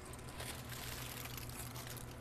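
Faint crinkling of an aluminium-foil packet being handled and set down, over a steady low hum.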